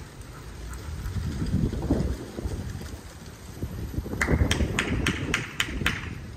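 Wind rumbling on the microphone, then a quick run of about seven sharp taps, three or four a second, in the last two seconds.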